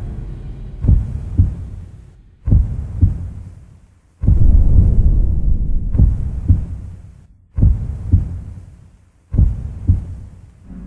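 Deep, booming heartbeat sound effect: double thuds about half a second apart, a pair every one and a half to two seconds, each dying away in a low rumble.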